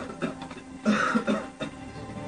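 An animated character coughing in two short bouts, about a quarter of a second in and again about a second in, over quiet film score music.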